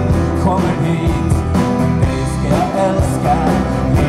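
Live rock band playing the song with a steady drum beat, and a man's voice singing over the band in places.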